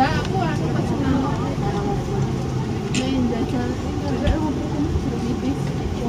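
Busy restaurant din: several people talking in the background over a steady low rumble.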